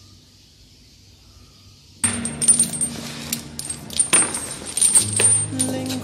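Leg-iron chains clinking and jingling with each step, starting suddenly about two seconds in after a quiet stretch. Low, steady music tones join near the end.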